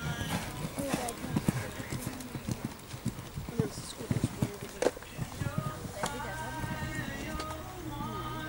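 Hoofbeats of a horse cantering on a sand arena, a run of irregular dull thuds. Background music and a voice come in underneath, clearer in the last couple of seconds.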